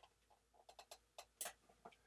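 Faint, irregular clicks from a computer mouse, about ten in two seconds, as the piano roll view is dragged and resized.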